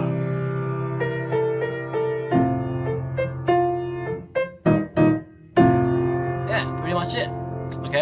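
Piano chords played on a Yamaha keyboard: held chords over a low bass note, changing every second or two. A few short, detached notes come just past the middle before the held chords resume.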